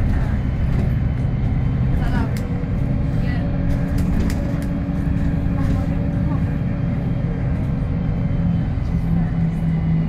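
VDL SB200 single-deck bus heard from inside the passenger saloon while under way: diesel engine and drivetrain running with steady tyre and road rumble. The engine note shifts in pitch a couple of times as it goes.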